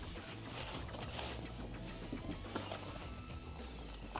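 Faint handling sounds as a soft pistol case is opened and the pistol lifted out: light rustling with a few soft clicks, about three in all.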